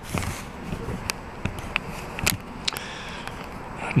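Handling noise from a hand covering and gripping the camera: rubbing against the microphone with several sharp clicks and knocks scattered through.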